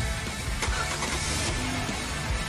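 Background music, with an SUV's engine starting and revving briefly under it, loudest from about half a second to a second and a half in.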